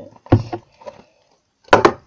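Clear plastic tub being handled and set down on a tabletop: a sharp knock about a third of a second in, then a quick double knock near the end after a short quiet gap.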